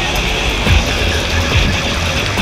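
Background music with a steady low beat, over a continuous noisy drone like passing vehicles or aircraft.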